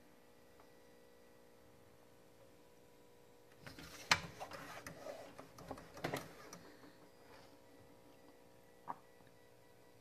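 Hand rubbing and tapping on a pinball playfield and its wire ramps: scuffs and a few sharp clicks about four to seven seconds in, and one more click near the end, over a faint steady hum.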